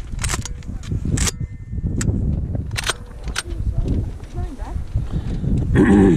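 Wind rumbling on the microphone, with five or six sharp clicks or knocks spaced about a second apart in the first half. A few short pitched calls come in the second half, and a louder voice-like call comes right at the end.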